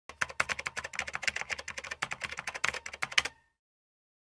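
Typing: rapid, irregular key clicks at roughly eight to ten a second, which stop about three and a half seconds in.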